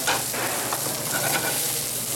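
Fish fillets and julienned vegetables sizzling steadily in hot grapeseed oil in a frying pan, with a sharp click right at the start.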